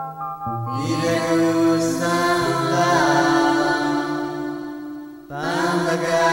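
Chanting voice over music in long phrases. One phrase begins about half a second in, and a new one starts just before the end after a brief dip.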